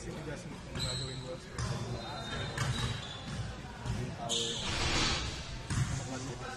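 Basketballs bouncing on a gym floor in a large, echoing hall, with indistinct voices around and a brief hiss about four seconds in.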